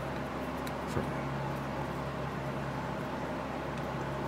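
Steady low background hum of a workshop, with one faint click about a second in as small parts are handled.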